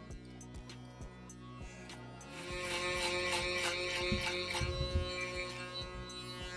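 Background music, louder from about two seconds in, over the steady low hum of a BaBylissPRO GOLDFX electric foil shaver running over a freshly razor-shaved scalp to take the stubble down further.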